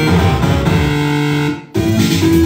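Electronic music played live on small handheld electronic instruments through a mixer: held notes over a busy low pattern. About one and a half seconds in, it cuts out abruptly for a moment, then resumes.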